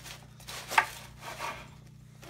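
Bread knife sawing through the crust of a baked calzone on a wooden cutting board, a few scraping strokes with one sharp click a little under a second in.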